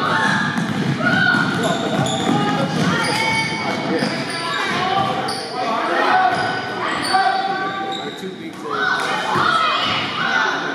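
Basketball being dribbled on a hardwood gym floor amid shouting children's and adults' voices, echoing in a large hall.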